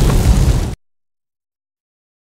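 A loud, rough blast of noise, heaviest in the low end, that cuts off abruptly under a second in, leaving dead silence.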